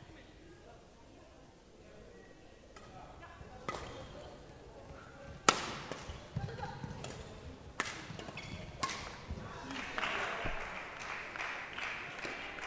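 Badminton racket strikes on a shuttlecock during a rally: several sharp cracks a second or two apart, the loudest about halfway through. Near the end the rally stops and a wash of voices rises from the hall.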